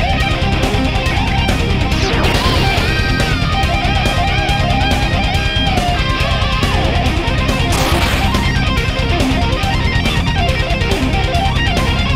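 Heavy metal electric guitar playing fast riffs and melodic lead runs over a steady, fast beat, with noisy swells about two seconds in and again near eight seconds.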